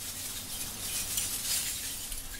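Faint hiss with light clinking, of pieces of scrap metal recovered from incinerator ash falling onto a heap.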